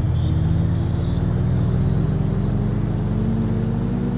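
Edited-in outro sound: a steady low drone with engine-like texture and a faint tone rising slowly above it.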